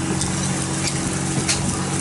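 Steady low mechanical hum over a wash of noise, with a few faint light clicks as a plastic straw stirs iced coffee in a mug.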